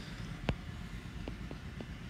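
A stylus tapping on a tablet screen while writing: one sharper tap about half a second in and a few fainter ticks later, over a steady low hum.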